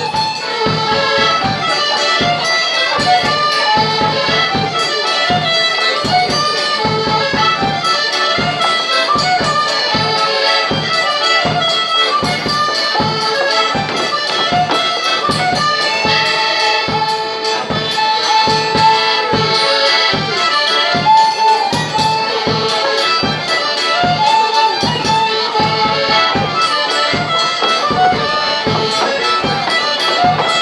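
Polish folk band (kapela) playing a traditional tune: fiddle and Hohner piano accordion over a steady beat on a baraban bass drum fitted with a stalka and a cymbal.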